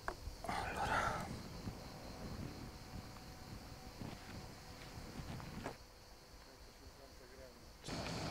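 Faint sounds of a landing net and a caught sea bass being handled: a brief splashy rustle about half a second in, then a few light clicks, with a sharper click shortly before the sound drops quieter near the end.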